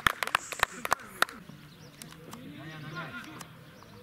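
Quick, irregular hand claps from a few people, dying away about a second in. Faint men's voices calling across the pitch follow.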